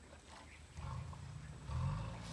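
Low rumble of an Asian elephant, starting about a second in and growing louder near the end.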